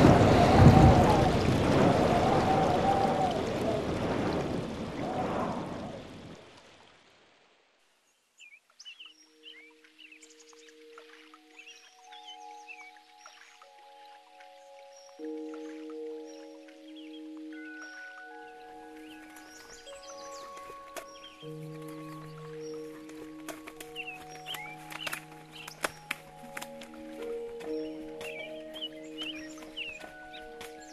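Heavy rain and thunder rumble fading out over the first six seconds. After a moment of silence, slow, soft music of long held notes begins, with birds chirping faintly over it.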